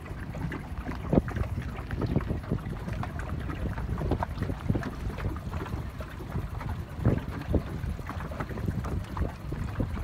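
Wind buffeting the microphone, with small waves slapping and splashing irregularly against a boat's hull.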